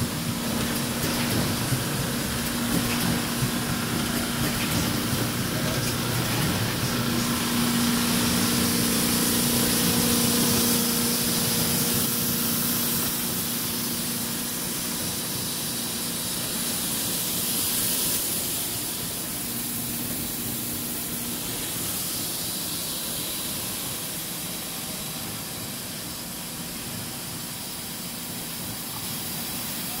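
Steady hiss and hum of plastics-processing machinery running in a large exhibition hall, with a low hum tone that drops away about two-thirds of the way through.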